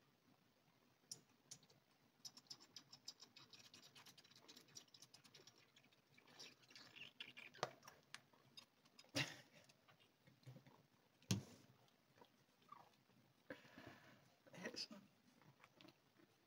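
Ginger kitten suckling from a small nursing bottle of milk replacement: faint, quick wet clicks and smacks of its tongue on the teat, several a second for a few seconds, then scattered smacks with two sharper knocks in the middle.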